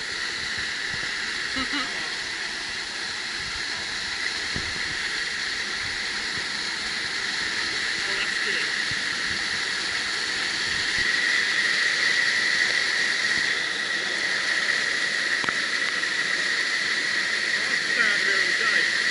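Man-made waterfall pouring down a concrete wall onto a person and into the pool below: a steady rush of falling water, a little louder about eleven seconds in.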